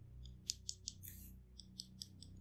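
Felt-tip marker tip tapping and stroking on paper: three sharp ticks, a short scratchy stroke about a second in, then a few lighter ticks.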